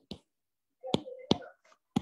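A handful of short, sharp clicks: one at the start, two about a second in and one at the end, with faint murmuring between them.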